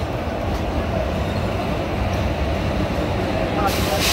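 Indian Railways express train rolling slowly along a station platform: a steady low rumble of wheels on rails, heard from aboard the train. A loud hiss sets in near the end.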